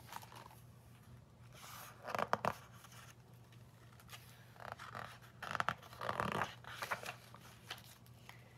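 Pages of a picture book being turned and handled: several brief papery rustles and scrapes, the loudest about two seconds in.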